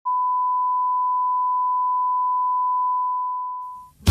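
Broadcast line-up tone, the 1 kHz reference tone that goes with colour bars: one steady pure beep that fades out over its last second.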